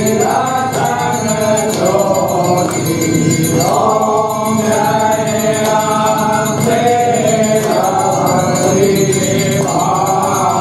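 Voices singing a Hindu aarti hymn together in a chant-like melody, with a light repeating percussion beat behind them.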